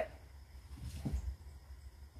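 Faint handling sounds as a pair of dumbbells is lifted off a stone patio, with a low thump about a second in, over a quiet outdoor background.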